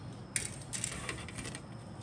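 Plastic model-kit sprues being handled and set down on a cutting mat: one sharp click about a third of a second in, then a short run of light plastic clicks and rustle.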